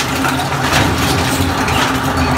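Industrial plastic pallet shredder running under load, its motor humming steadily beneath the noisy clatter of plastic being chopped into flakes.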